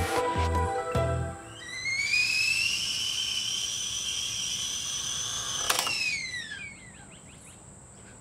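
A short music sting, then a stainless steel stovetop whistling kettle on a gas burner whistles at the boil: the whistle rises in pitch, holds steady, and after a click near six seconds falls in pitch and dies away.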